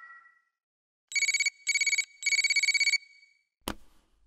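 A telephone ringing: an electronic, fast-trilling ring in three bursts, the last one longest, followed by a single click near the end.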